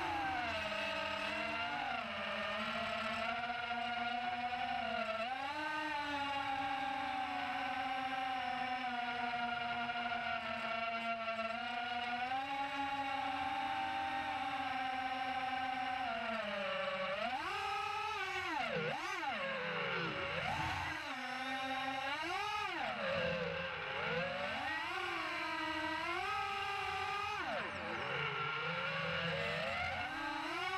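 Brushless motors of a 5-inch FPV quad spinning three-blade props, heard from its onboard camera: a whine whose pitch holds fairly steady for the first half. From a little past halfway it swings quickly up and down several times as the throttle is punched and cut.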